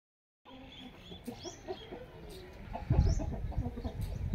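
Aseel chickens clucking in short, scattered calls, with a few higher chirps. About three seconds in, a run of loud, low thumps or rumbling comes in over the clucking.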